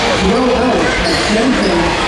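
Many voices talking at once in a basketball arena, echoing off the hall, with a basketball bouncing on the wooden court.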